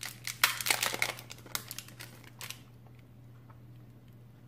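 Thin clear plastic wrapping crinkling and crackling as it is pulled off a coiled bundle of wired earphones. The crackles come thick and fast, then stop about two and a half seconds in.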